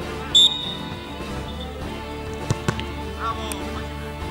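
A referee's whistle gives one short blast. About two seconds later come two sharp thuds as the football is kicked and play restarts.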